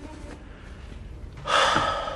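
A person's loud, sharp breath, a gasp-like rush of air about one and a half seconds in, lasting about half a second, after a quiet stretch.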